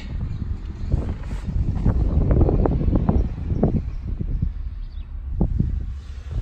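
Handling noise from a phone being moved around inside a car's cabin: light knocks and rustles over a steady low rumble, busiest in the first half and with two more knocks near the end.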